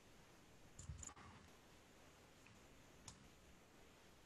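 Near silence: room tone with a few faint clicks, a small cluster about a second in and a single click a little after three seconds.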